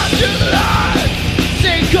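Metalcore band playing at full volume: distorted electric guitars, bass and pounding drums, with a vocalist screaming into a handheld microphone.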